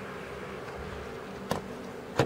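A steady low buzzing hum, with a single sharp click about one and a half seconds in.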